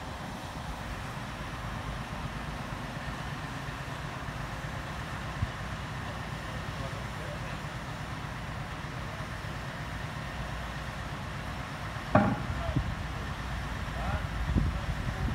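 Diesel engine of a lorry-mounted crane truck running steadily, a low even rumble. A single short knock comes about five seconds in, and a brief louder sound near the end.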